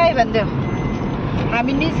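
Steady road and engine noise inside a moving car's cabin, with voices talking over it near the start and again near the end.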